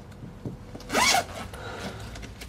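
A suitcase zip pulled quickly once, about a second in, with a short sweep in pitch as the slider runs along the teeth.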